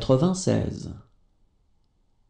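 Speech only: a voice saying the French number "quatre-vingt-seize" (ninety-six) once, about a second long.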